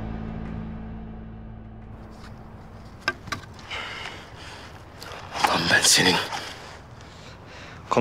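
Low sustained film-score tones fading out, then two short clicks and a man's breathy, wordless gasps and grunts of effort, the loudest about five to six seconds in.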